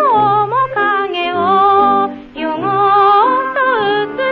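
A woman singing a pre-war Japanese ryūkōka popular song from a 1930s record: long held notes with vibrato, gliding between pitches over an instrumental accompaniment, with a short break for breath about two seconds in. The sound is thin and dull, its top end cut off as on an old disc.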